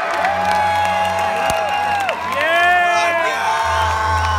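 Electronic dance music played loud over a club sound system in a live DJ set: synth notes that swoop up and fall away over a steady bass line, with a deeper, heavier bass dropping in near the end.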